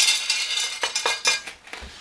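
Small pebbles rattling and clicking against each other as a gloved hand spreads them as a top layer in a large plant pot. The dense rattle gives way to a few separate clicks about a second in and dies down near the end.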